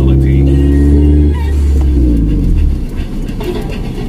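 Radio music with sustained low notes, which give way about three seconds in to a rough low rumble of car engine and road noise.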